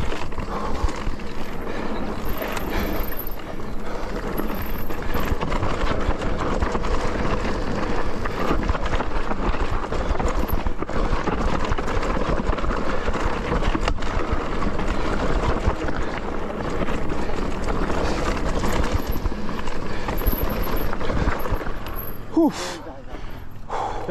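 Mountain bike riding along a dirt trail: a steady rough noise of tyres on the ground, with the bike clattering over bumps. Near the end there is a short wavering pitched sound, likely a rider's voice.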